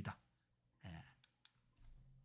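Near silence: room tone, with one faint brief click about a second in and two tinier ticks after it.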